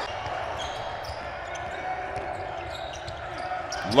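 Low, steady background sound of a near-empty basketball arena between plays, with a few faint knocks near the end.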